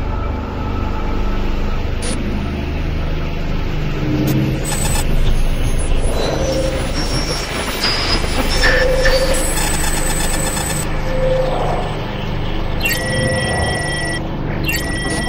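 Steady low road-traffic rumble overlaid with electronic sci-fi sound effects: scattered short synthetic tones, then a chiming electronic tone sequence about a second before the end.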